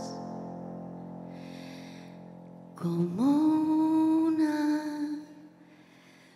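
A woman singing a slow ballad into a microphone. The previous phrase dies away, then a little under three seconds in she slides up into one long held note, which fades out about two seconds later.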